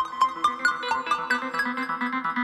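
Doepfer A-100 analog modular synthesizer playing a fast sequenced run of short, decaying notes, about four or five a second, stepping in pitch. A steady lower tone comes in underneath about a third of a second in.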